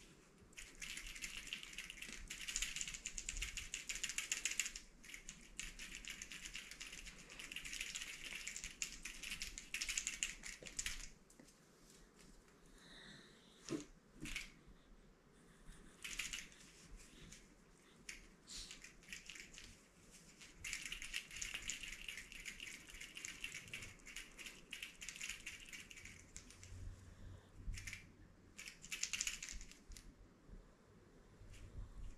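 Cloth rustling and scratching in bursts of a few seconds as a sock puppet on a forearm is jerked about, with one soft knock about halfway through.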